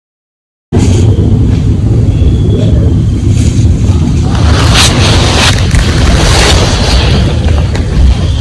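Playback of a heavily gain-boosted outdoor recording that cuts in abruptly about a second in: a loud low rumble with hiss over it and scattered clicks and knocks.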